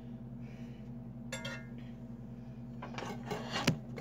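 A metal spoon clinks against an enamelled cast-iron pot about a second in, over a steady low hum. Near the end, rubbing and a few sharp knocks as the phone filming is bumped.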